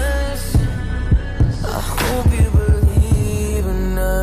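Slow R&B instrumental music with sustained chords and deep bass, and no vocals. A few sharp low drum hits come in the first half, then a quick run of about six hits a second in the second half.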